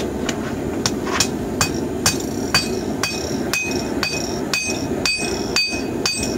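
Hand hammer striking glowing rebar against a hatchet blade on a steel anvil, about two blows a second, in an attempt to forge-weld the rebar handle into the slotted blade. From about three seconds in, the blows ring out sharply.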